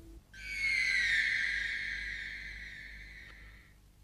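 A whale's high whistling call: one long tone that slides slowly down in pitch and fades out over about three seconds.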